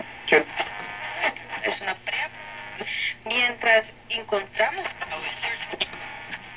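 Vintage wooden tabletop tube radio, model 42-322, playing an AM talk station through its own speaker: a man's voice in broken phrases, with a steady low hum underneath.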